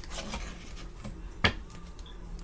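A tarot deck being handled on a tabletop: faint rubbing of cards, with one sharp tap about one and a half seconds in.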